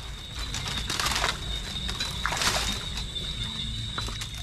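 Water sloshing and splashing as a mesh fish trap is handled in shallow swamp water, with two louder splashes about one second and two and a half seconds in.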